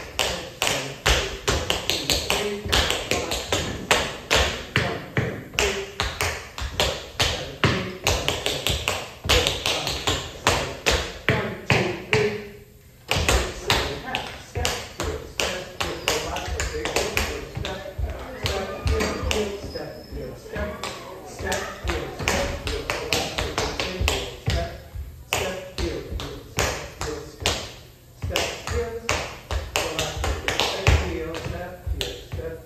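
Two dancers' tap shoes striking a wooden floor in a quick rhythm, dancing the second section of the Shim Sham, with a brief pause a little before the middle.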